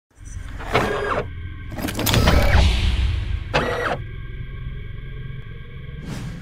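Intro sound effects for an animated mechanical logo: three short motorised whirs, each rising then falling in pitch, over a deep rumble that is loudest about two seconds in. After that a set of steady held tones rings on.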